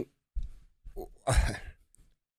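A man sighing, a breathy exhale into a close microphone about one and a half seconds in, with a couple of softer breath noises before it.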